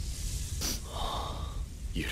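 A person's short, sharp breath through the nose, then a softer breathy sound: stifled laughter.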